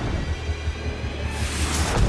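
Ominous trailer score: a steady low drone, with a rushing whoosh swelling in over the last half-second just before an explosion.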